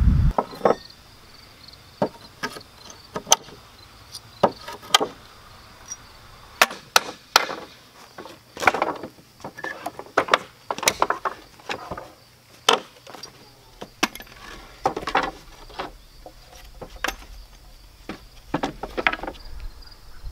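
Wooden pallets being pried and knocked apart with a hammer and wrecking bar: irregular knocks and cracks of metal on wood, some followed by a short creak as boards pull free. Crickets chirp faintly throughout.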